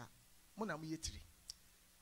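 A man's voice over a microphone: one short spoken phrase about half a second in, then a pause broken by a brief, faint click.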